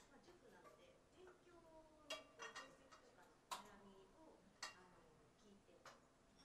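Faint voices speaking in a small room, with a few sharp clicks or taps: a quick cluster about two seconds in, then single ones at about three and a half and four and a half seconds.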